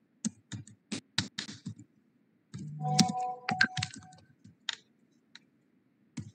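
Computer keyboard typing: an irregular run of key clicks as a short phrase is typed. About three seconds in there is a brief steady tone.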